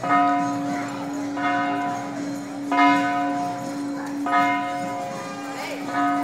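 Large temple bell struck five times, about every second and a half, each stroke ringing on over a sustained low hum, with crowd voices underneath.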